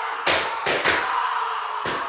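A series of loud bangs, about four in two seconds and unevenly spaced, over a steady background din.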